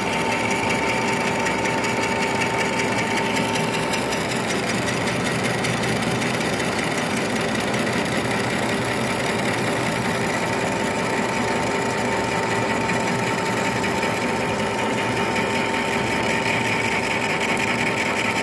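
Bulgarian-built metal lathe turning a heat-treated metal workpiece with a carbide-insert tool: steady machine running and cutting noise, with a constant whine over it.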